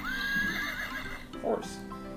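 Recorded horse whinny played from a farm-animal sound book's small speaker, a wavering call lasting about a second, with background music running under it.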